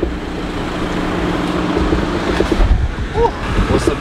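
A Škoda car idling with its air conditioning blowing, a steady hum, heard with the driver's door open. A dull thump comes about two and a half seconds in.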